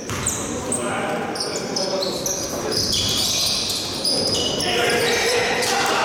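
Indoor basketball game: the ball bouncing, many short high squeaks from players' shoes on the court, and voices, all echoing in a large sports hall.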